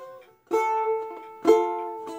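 Four-string domra strummed twice, a seventh chord struck about half a second in and again, louder, a second later, each left ringing and fading.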